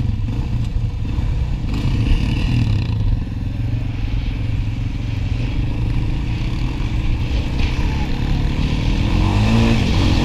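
Sport quad (ATV) engines running under throttle while riding across sand, with a rev that rises in pitch near the end.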